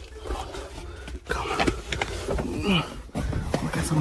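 Rustling, bumps and handling noise from a phone held close as a person clambers into a car's cargo area, with a few brief vocal sounds.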